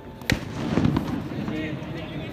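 A cricket bat strikes a tennis ball with one sharp crack, followed at once by loud shouting from players and onlookers.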